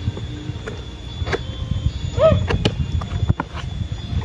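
Cardboard box of a ceiling-hanging fan being opened by hand: scraping and rustling with a few sharp clicks as the flaps are pulled. There is a low rumble underneath, and a short squeal that rises and falls about two seconds in.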